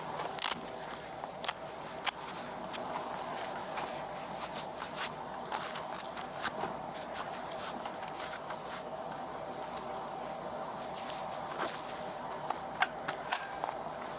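Rustling, scuffing and scattered sharp clicks of movement close to a body-worn camera's microphone, over a steady faint hum.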